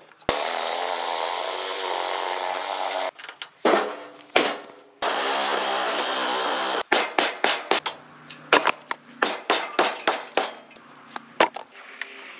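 Cordless reciprocating saw cutting on the old wooden deck of a car-hauler trailer to free the boards: two steady runs, about three seconds and then about two seconds long, with a short pause between them. From about seven seconds in comes a long series of sharp knocks and clatter as the loose boards are handled.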